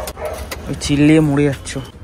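Car keys clicking and jangling in the ignition, with a few sharp clicks near the start, and a man's voice speaking briefly over it.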